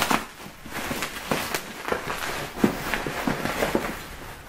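Plastic bubble wrap crinkling and crackling in irregular clicks as it is handled and pulled off a cardboard parcel.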